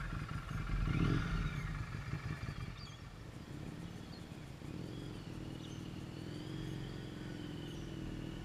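Motorcycle engine pulling away, loudest about a second in and fading as the bike moves off, then running more quietly and steadily at a distance.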